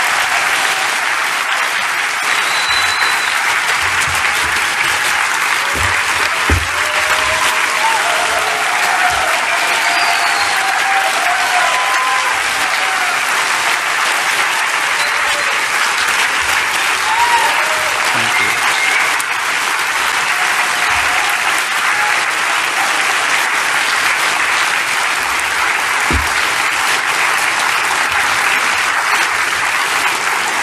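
A large audience applauding in an auditorium, long and steady.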